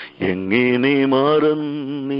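A man singing a long held, slightly wavering note of a Malayalam Christian hymn, heard over a telephone line that cuts off the high end. It comes in after a brief dip in the sound.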